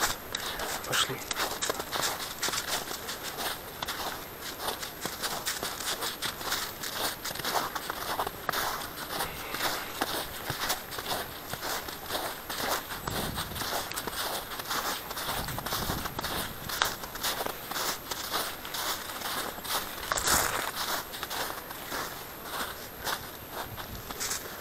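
A person's footsteps walking over thin snow, a steady run of short steps.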